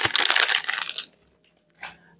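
Plastic packaging crinkling and rustling as it is pulled open by hand for about a second, then stopping abruptly.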